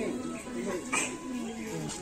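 Voices of several people talking at once, overlapping.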